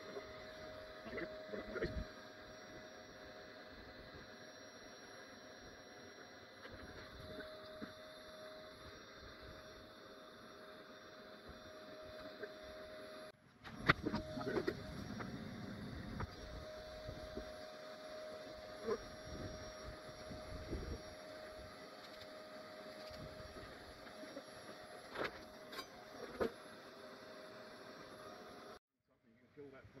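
Bee vacuum running steadily, its clear hose sucking honey bees off the wood panel and the comb, with a faint tone that comes and goes over the hum. A few sharp knocks sound in the second half.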